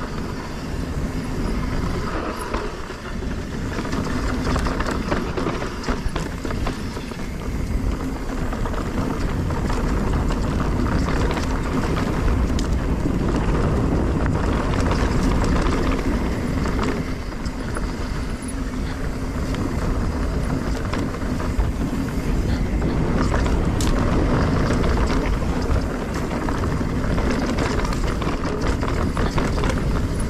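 Specialized S-Works Enduro mountain bike riding down a dry dirt trail: tyres rolling over the dirt with frequent clicks and rattles from the bike over bumps, over a steady low rumble of wind on the microphone.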